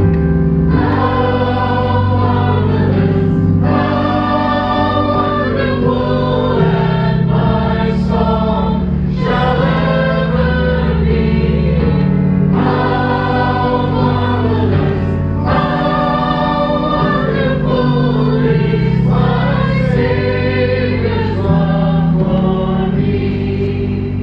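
A group singing a worship song together, phrase after phrase, over sustained keyboard chords that change every few seconds.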